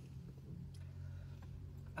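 Quiet eating sounds: a couple of faint clicks from chewing and a fork, over a steady low hum.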